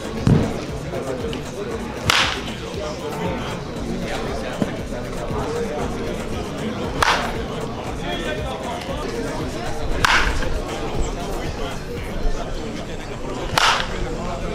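Wooden baseball bat hitting balls: four sharp cracks a few seconds apart, the last near the end.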